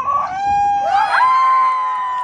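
Several spectators yelling together in long held shouts as an attack goes in on goal, the voices rising within the first second and holding on at different pitches.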